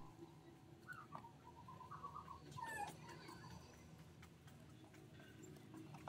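Near silence: faint room tone with a few faint, short squeaky chirps in the first half.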